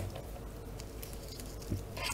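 Faint rustling and handling of the clear plastic wrapping around a wristwatch as it is lifted out of a zippered hard case, with a small tap near the end.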